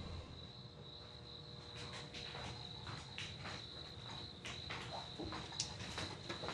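Faint cricket chirping, a continuous high trill, with scattered soft taps and clicks.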